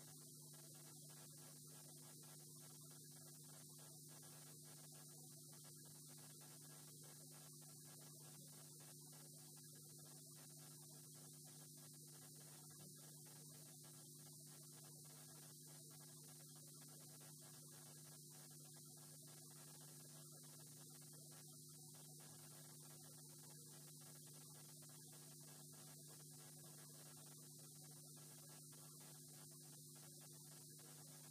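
Near silence: a steady low electrical hum with faint hiss.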